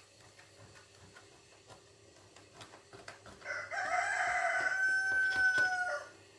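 A loud, drawn-out call beginning about three and a half seconds in, rough at first and then held as one steady note for over a second, dipping slightly just before it stops.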